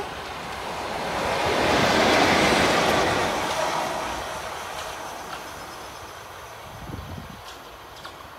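Class 73 electro-diesel locomotive passing by on the rails, its running and wheel noise swelling to a peak about two seconds in and then fading away over the next few seconds.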